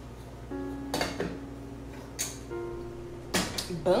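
Background music of long held notes, with pot lids and pans clattering a few times on an electric stove.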